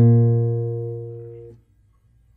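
Nylon-string classical guitar: a plucked chord struck at the start rings and fades, then is damped about one and a half seconds in.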